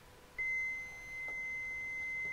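Practi-TRAINER Essentials AED training unit sounding one steady high-pitched beep after being switched on. The tone starts about half a second in and holds, briefly dipping in volume.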